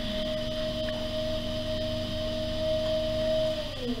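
Electric potter's wheel motor whining steadily while wet clay is thrown on it. Near the end the pitch sags briefly and then comes back up as the wheel slows under load.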